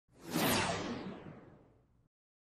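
Intro whoosh sound effect for a logo animation: one swell of noise that peaks about half a second in and fades away over the next second, losing its brightness as it fades.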